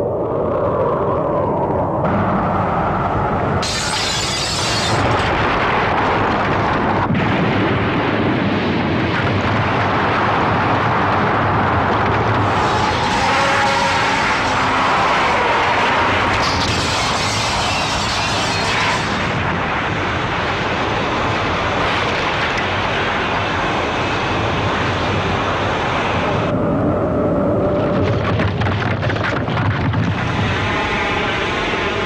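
Soundtrack of an animated atomic-bomb blast: continuous loud explosion noise with music under it, brightening into sharper hissing surges a few times.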